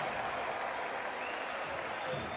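Ice hockey arena crowd applauding: dense, steady clapping.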